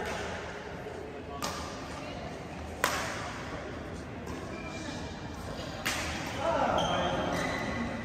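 Badminton rackets hitting a shuttlecock in a doubles rally: four sharp hits about a second and a half apart, the second the loudest and the third faint.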